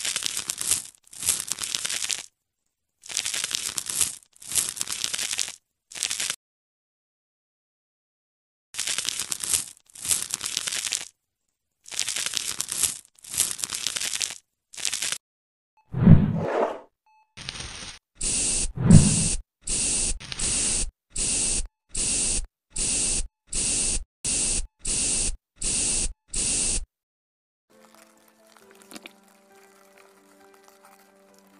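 Added ASMR sound effects of a knife scraping in short rasping strokes, in pairs and threes with a pause of about two seconds in the middle. Past halfway comes a heavier burst with a low thud in it, then a quick, even run of about a dozen spray-bottle spritzes. Faint soft music comes in near the end.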